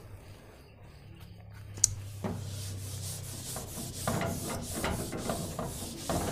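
A whiteboard being wiped with an eraser: repeated rubbing strokes across the board, starting about two seconds in after a single sharp click.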